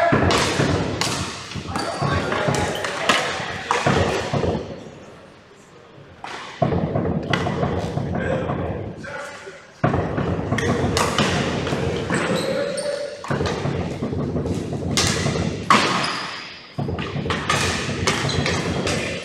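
Ball hockey being played on a gym's wooden floor: repeated sharp clacks and thuds of sticks and the ball against the floor, echoing in the large hall, with players' voices calling out indistinctly.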